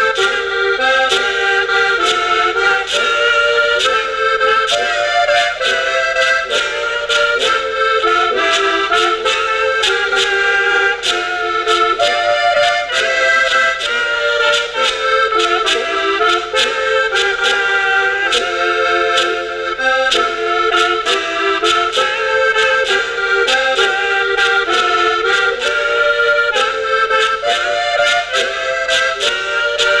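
Diatonic button accordion playing a lively folk tune with chords, with hand percussion clicking a steady beat along with it.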